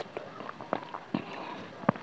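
Close-miked chewing of mango, heard as a few small wet mouth clicks and crunches, the sharpest just before the end.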